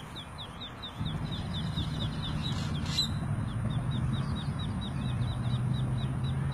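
Ducklings peeping: a steady run of short, high, falling peeps, several a second. About a second in, a low steady rumble starts under them.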